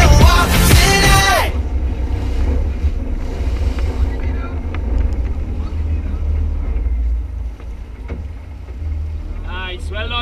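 A sport-fishing boat's engines running under a steady deep rumble of wind on the microphone, with water churning at the stern. A voice is heard near the end.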